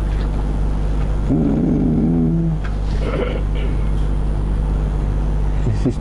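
Steady low hum, with a brief murmured voice about a second and a half in.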